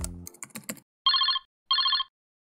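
Electronic ringtone of an outgoing call: two short, warbling rings about half a second apart, preceded by a quick run of keyboard-like clicks.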